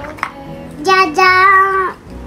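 A young child's voice in a singsong, two drawn-out high notes close together about a second in, after a light click near the start.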